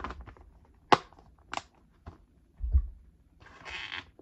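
A DVD case being handled: a sharp click about a second in, a second click half a second later, a low thud, then a brief rustle near the end.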